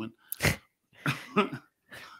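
A man laughing briefly: a sharp breathy burst of air, then a short voiced laugh about a second later.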